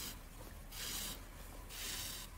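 Thick milk-cotton yarn being drawn through the loops of a crocheted hat while sewing up its side seam, making a soft rubbing swish twice, about a second apart.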